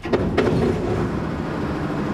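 An old Fahr combine harvester's diesel engine starting: it fires with a sudden clatter and goes straight into loud, steady running.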